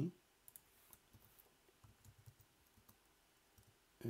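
Faint, scattered clicks of computer keyboard keys being typed, a few at a time with gaps, in near silence.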